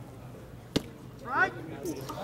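A single sharp crack of a baseball in play, about three-quarters of a second in, followed by a short rising shout from the crowd.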